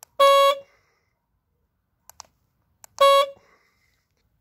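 Citroën 2CV's horn sounded by remote control: two short, loud single-pitch beeps about three seconds apart, with faint clicks just before each.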